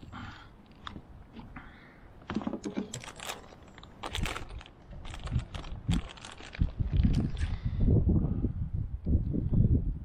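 Clicks, crackles and rustling of hands and metal pliers working a lure out of a caught fish's mouth, with loud low rumbling thumps on the microphone from about seven seconds in.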